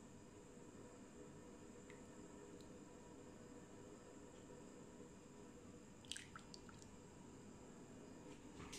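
Near silence: faint steady room hum, with a few soft clicks about six seconds in.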